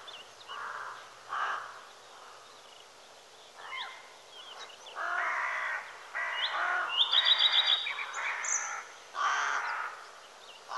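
Crows cawing again and again, the harsh calls spaced out at first, then louder and coming one after another from about five seconds in. Small birds chirp faintly between the caws.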